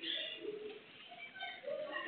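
Bird calls, with voices in the background.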